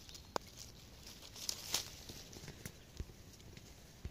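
Faint crackling and rustling of dry leaf litter and twigs as a hand pulls a mushroom from the forest floor. A few sharp clicks, a cluster of them near the middle, and a soft knock near the end.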